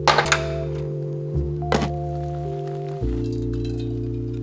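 Background music over a quick cluster of sharp knocks right at the start and another knock a little under two seconds in: a metal pot set down on a gas stove's grate.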